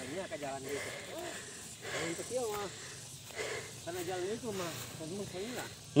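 A man breathing hard from a steep uphill climb, with several faint voiced huffs and mutters.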